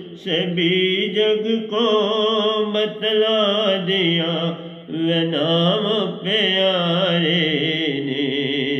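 A man's voice singing a Hindi devotional bhajan solo, drawing out long notes that waver in pitch, with a short breath break about five seconds in.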